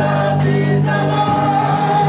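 Gospel music with a group of voices singing, held notes over a steady accompaniment.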